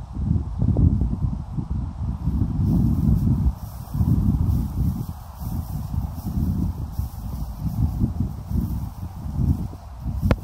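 Wind buffeting the microphone: a low, uneven rumble that swells and dips in gusts.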